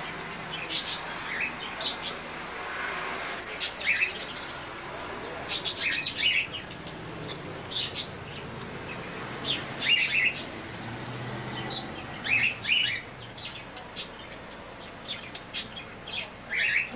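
Caged parakeets chirping: many short, high chirps at irregular intervals.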